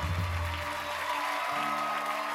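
A live rock band with acoustic guitar, bass and drums ends its song: the last low notes ring out and fade about half a second in, and audience applause rises beneath them.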